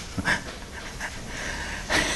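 A short breath close to the microphone, then low room noise.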